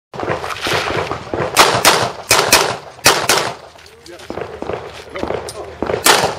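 Pistol shots fired in quick pairs, each pair a fraction of a second apart, about eight loud shots in the first three and a half seconds. Fewer, fainter shots follow.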